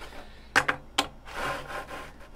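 Thin wooden cut-out letters being set down and slid across a wooden panel board: a few light clacks a little after half a second in and again at about one second, then a scraping rub of wood on wood.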